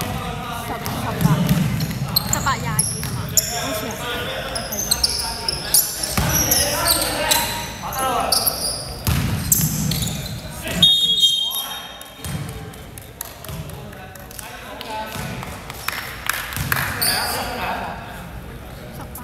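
Basketball game in a large gym hall: sneakers squeaking on the hardwood court, the ball bouncing, and players calling out to each other, busier in the first two-thirds and quieter near the end.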